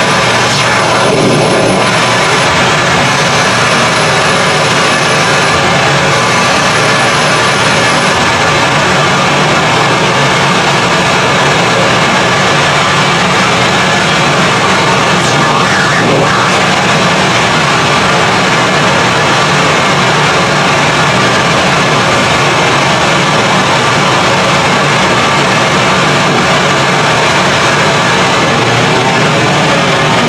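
Harsh noise from an electronic noise rig: a loud, unbroken wall of distorted static with no beat or melody.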